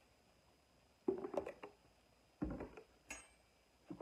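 A few knocks and clinks of a ceramic baking dish and utensil being handled on a stone countertop: a cluster of light knocks, a heavier thud, then a sharp clink that rings briefly.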